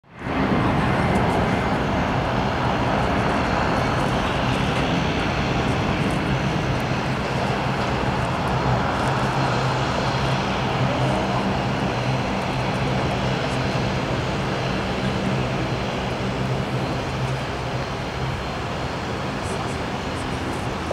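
Dash 8 turboprop taxiing with both engines running: a steady low propeller hum over a wide rush of turbine and propeller noise. It eases slightly toward the end as the aircraft turns away.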